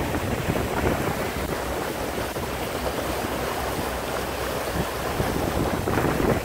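Steady rush of wind on the microphone and water along the hull of a 28-foot boat under way.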